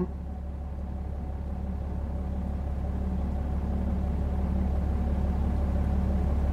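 Vehicle engine and running noise heard from inside the cab: a steady low rumble that slowly grows a little louder.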